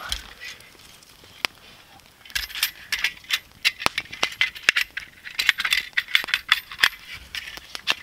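Agawa Canyon folding saw being folded up by hand: a single click at about a second and a half, then from about two seconds in a quick run of light metallic clicks and rattles from its frame and blade, dying away near the end.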